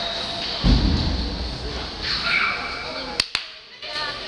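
Echoing arena ambience during a youth box lacrosse game: background voices and calls, a heavy low thud just over half a second in, and two sharp clicks about three seconds in followed by a brief dip in the sound.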